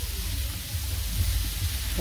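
Vegetables sizzling in a hot wok over a wood fire: an even, steady hiss with a low rumble underneath.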